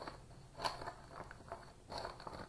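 Faint crinkling and rustling of a clear plastic implant-delivery funnel being handled, with a few soft clicks; the loudest comes about two-thirds of a second in and again just before the end.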